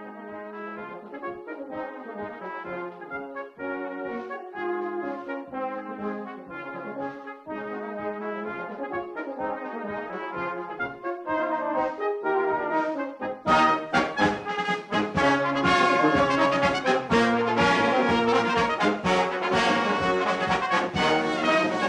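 Brass band of cornets, horns, euphoniums and tubas playing, starting in a softer passage. The full band comes in much louder about two-thirds of the way through.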